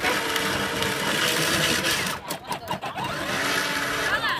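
Electric motor and gearbox of a Peg Perego Fiat 500 ride-on toy car whirring steadily as it drives, easing off for a moment partway through.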